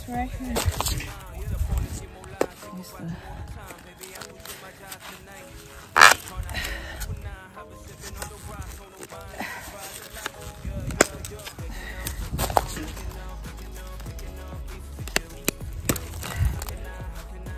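Background music with a singing voice, over sharp cracks and scrapes from a shovel and loppers cutting crepe myrtle roots in the soil. The loudest crack comes about six seconds in.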